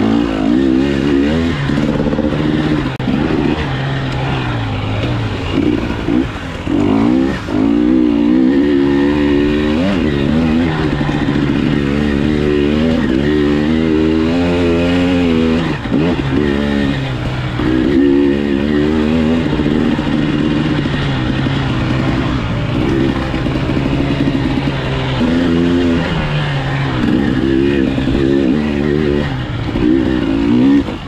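KTM off-road dirt bike engine under hard riding, revving up and dropping back over and over as the throttle is opened and closed and the gears change.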